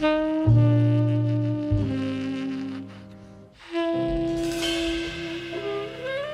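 Jazz quartet playing slowly: tenor saxophone holding long notes over sustained piano chords and low double bass notes. A cymbal wash rises about four seconds in as a new chord enters.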